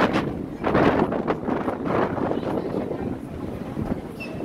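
Wind buffeting the microphone of a handheld phone camera in irregular gusts, a loud rumbling rush.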